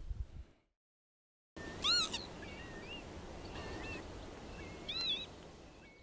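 Faint outdoor ambience with a few short, whistled bird calls. The clearest call comes about two seconds in, with smaller chirps after it and another call near the end.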